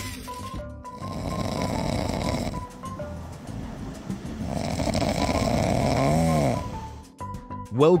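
Walrus snoring in its sleep: two long snores of about two seconds each, the second ending in a brief rise and fall in pitch.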